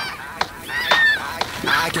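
Children's short high-pitched shouts and squeals while sliding down a snowy hill on plastic saucer sleds, twice in quick succession, with a few brief clicks between them.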